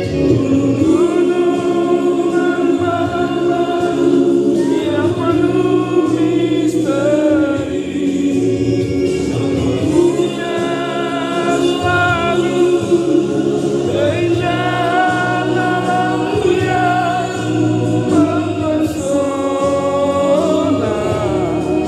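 A group of voices singing a slow song together, with held low accompaniment notes under the melody.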